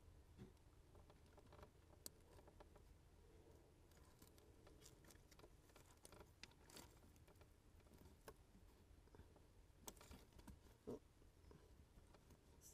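Near silence with faint, scattered clicks and ticks of small plastic parts being handled: a fiber-optic cable connector being fitted and locked together. A few slightly sharper clicks come about ten to eleven seconds in.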